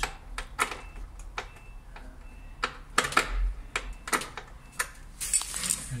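Irregular sharp clicks and light taps, about a dozen over several seconds, with a short hiss near the end: handling noise as the phone is moved about the inverter wiring cabinet.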